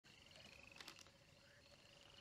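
Faint night-time chorus of trilling insects: a high, steady pulsed trill over a lower one, with a few soft clicks a little under a second in.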